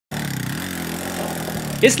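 Small motorcycle engine running steadily at low revs, its pitch rising slightly about half a second in.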